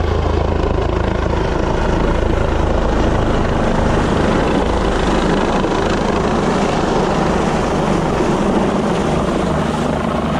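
Rescue helicopter overhead, its rotor and engine making a loud, steady thrum while it lifts a casualty off the cliff on its line. The deep low rumble eases after the first few seconds.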